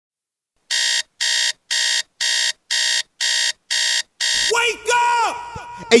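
Digital alarm clock beeping in a steady pulse: eight buzzy beeps, about two a second, used as the intro of a hip hop track. Near the end the beeping gives way to a voice with falling, gliding pitch.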